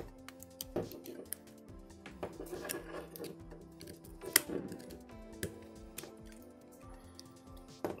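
Background music, with sharp plastic clicks and snaps as the snap-fit clips of a Blackview A7 Pro's back cover are pried open with a plastic pick. The loudest click comes about four and a half seconds in.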